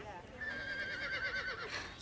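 A horse whinny: one long wavering call, starting about half a second in.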